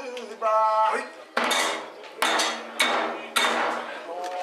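Kagura hand cymbals clashing about five times in the second half, each strike ringing on, after a brief held note about half a second in.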